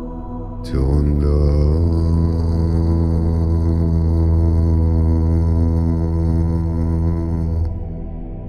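Ambient drone music. About a second in, a deep voice chants one long low note over it, the vowel shifting as it starts, and holds it for about seven seconds before it stops near the end.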